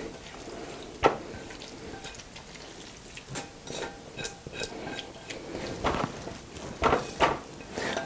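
Fried vegetables tipped from a frying pan into a plastic food processor bowl, with a spatula scraping and tapping against the pan: scattered light knocks and clicks, a sharper one about a second in and several more near the end.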